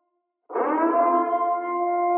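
A sustained, siren-like pitched tone with several steady overtones, cutting in abruptly about half a second in after a moment of silence, its pitch sliding up briefly at the start and then holding steady.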